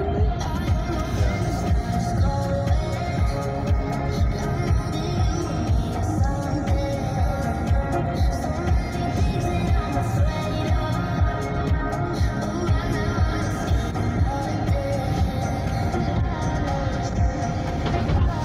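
Pop song with singing and a steady beat, playing on the car radio inside the cabin.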